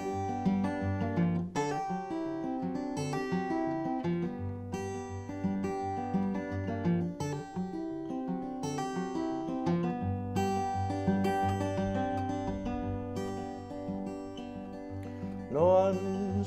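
Solo acoustic guitar playing an instrumental break: a steady run of picked notes over a low bass line. A singing voice comes back in right at the end.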